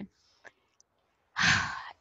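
A woman's breathy sigh, a noisy out-breath without voice about halfway through, lasting about half a second.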